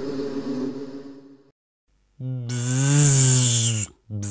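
A held musical chord fades out over the first second and a half. After a short silence, a loud buzz like a cartoon bee's drones for about a second and a half, bending up and back down in pitch, then cuts off.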